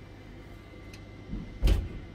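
Steady low hum inside a lift car, then a single loud clunk near the end as the lift's door mechanism starts to open the doors at the ground floor.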